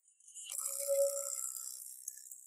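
A short jingling, shimmering music sting with a single ringing tone. It starts about half a second in, swells and then fades.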